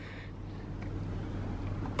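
Low, steady background rumble that slowly grows a little louder.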